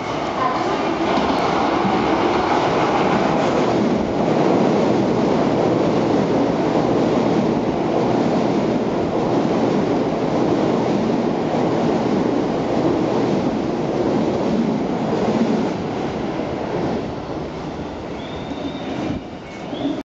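Keio 7000 series commuter train running through a station platform without stopping: a loud, steady rumble of wheels on rails as the cars go by for about fifteen seconds, fading away as the last car leaves.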